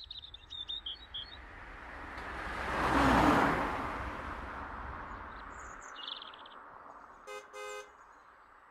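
A car passing by, its noise swelling to a peak about three seconds in and then fading, while small birds chirp. Near the end a car horn gives two short beeps.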